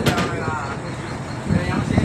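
People's voices calling out over a steady rumble of wind and boat noise at sea, with talk near the start and again near the end.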